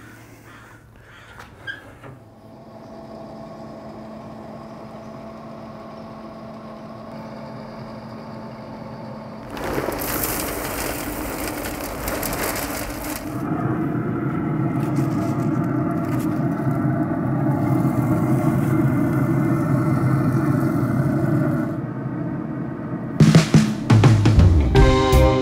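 Background music that grows louder about halfway through. About ten seconds in comes a rushing rattle lasting some three seconds: wood pellets being poured from a bag into a pellet grill's hopper.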